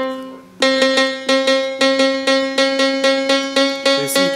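E-Pan electronic steelpan sounding a single steelpan note near middle C, restruck rapidly and evenly about three to four times a second as its tuning setting is stepped up.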